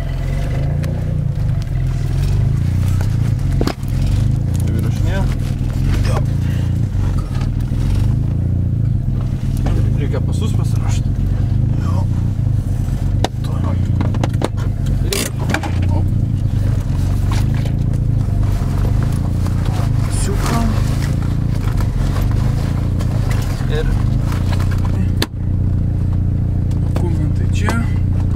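Steady low drone of a Zastava Yugo's engine and running gear heard from inside the small car's cabin, with a few clicks and knocks over it.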